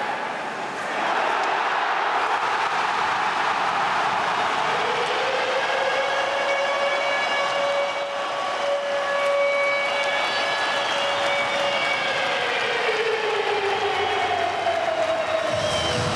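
A loud arena crowd roars while a siren sounds over it: the siren rises in pitch about five seconds in, holds one steady tone for several seconds, then falls away, with a second falling tone near the end.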